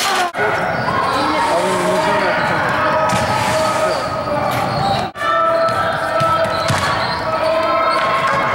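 A ball bouncing on a gym floor amid echoing voices in a large sports hall. The sound drops out briefly twice.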